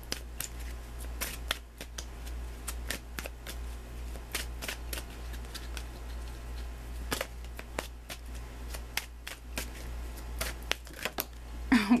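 Oracle cards being shuffled by hand: an irregular run of quick card-on-card clicks and flicks, over a low steady hum.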